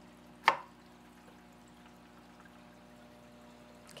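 A single sharp clack of something hard knocked against the dining table about half a second in, over a steady low hum.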